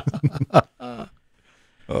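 A few men laughing briefly, then a short pause.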